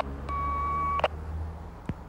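Handheld police radio: a click, then one steady beep lasting just under a second, cut off by another click.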